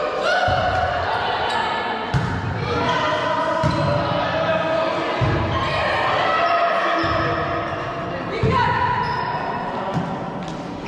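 Volleyball rally in a sports hall: players' high shouted calls echo through the hall, with sharp ball strikes about two seconds in, around five seconds and again near eight and a half seconds.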